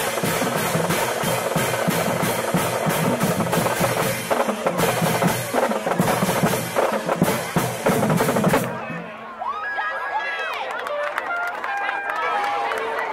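Drumline playing a fast, steady beat on snare and bass drums, cutting off suddenly about nine seconds in. After it, voices and shouts.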